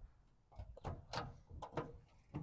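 Rear engine lid of a 1978 Volkswagen Bay Window bus being unlatched and swung open: a few light clicks and knocks from the handle, latch and sheet-metal lid.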